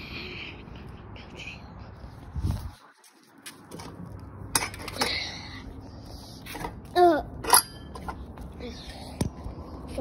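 Handling noise from a phone being moved about and set down: rustling with scattered knocks and clicks, briefly muffled about three seconds in. Two short, loud voice-like sounds falling in pitch come about seven seconds in.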